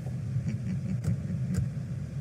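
Car engine idling, a low steady rumble heard from inside the cabin, with a few faint clicks.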